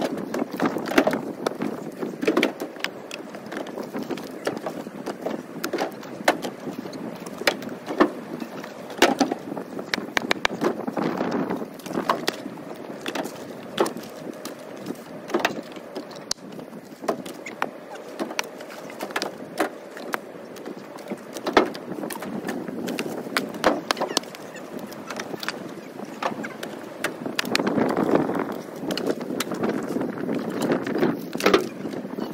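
Split firewood being thrown by hand into a pickup truck bed: irregular wooden clunks and knocks as pieces land on the pile and the bed, sometimes several in quick succession, over steady background noise.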